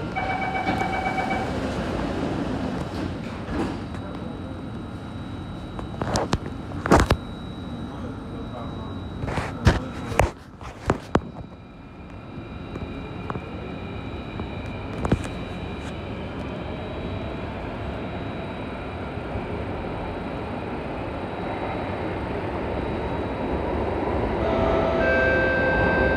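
Door-closing chime of an Alstom Metropolis C830 metro train, then several sharp knocks as the sliding doors shut. The train then pulls away, its traction motors whining in a slowly rising pitch over a steady running rumble as it gathers speed, with another short chime near the end.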